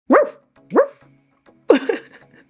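A dog barking three times, in short separate barks each with a quick upward rise in pitch.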